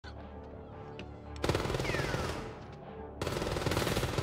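Automatic gunfire in rapid bursts: a quieter opening, then a long burst starting about a second and a half in and another just after three seconds, with music underneath.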